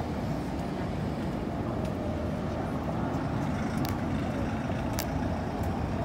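Steady low rumble of background noise, with a couple of sharp clicks about four and five seconds in.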